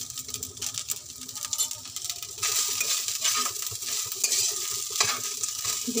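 Pasta and vegetables sizzling in a non-stick frying pan while a metal spatula stirs through them, scraping and clicking against the pan. The sizzle grows louder about two and a half seconds in.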